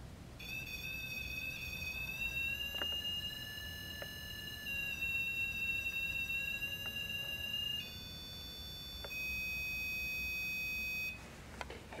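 REM pod alarm sounding: a continuous electronic tone that starts about half a second in, steps to a new pitch several times, and cuts off suddenly about a second before the end. The alarm is the sign that something has disturbed the field around its antenna.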